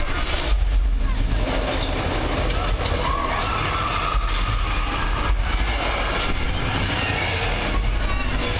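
Loud theme-park ride soundtrack of a giant ape fighting dinosaurs: a constant deep rumble with crashes, and one long creature cry from about three seconds in.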